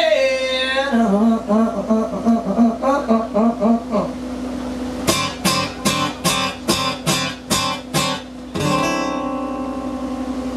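Acoustic guitar playing an instrumental passage live: a picked melodic run for about four seconds, then strummed chords at about three strokes a second, ending on a chord left ringing near the end.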